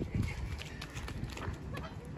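Children's quick footsteps and scuffs on leaf-strewn dirt as they run and scramble onto outdoor fitness equipment, a scatter of soft low thumps.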